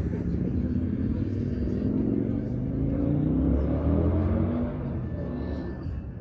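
A motor vehicle's engine running loud and low, rising in pitch as it accelerates about halfway through, then dropping away near the end.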